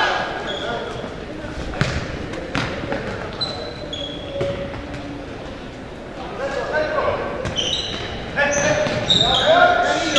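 A futsal ball being kicked and bouncing on a hardwood gym floor, a few sharp knocks that echo around a large hall. Voices of players or spectators calling out run through it and are loudest near the end.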